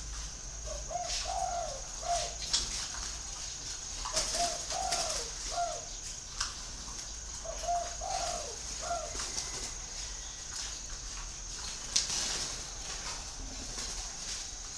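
Spotted dove cooing: three phrases, each of three low notes, about three and a half seconds apart, then silence from the bird for the last few seconds.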